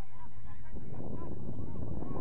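Wind rumbling on the microphone, growing heavier about a third of the way in. Faint repeated honking calls are heard early on.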